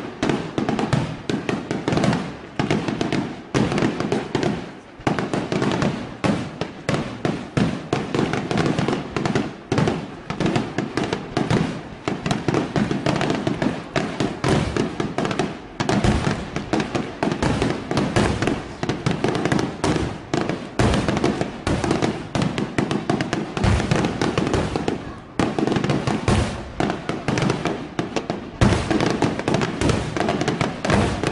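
Fireworks display: aerial shells launching and bursting in rapid, near-continuous succession, a dense run of bangs and crackle with brief lulls about five seconds in and again near twenty-five seconds.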